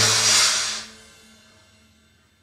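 Dramatic background score: a held low chord under a loud cymbal-like wash that fades away about a second in.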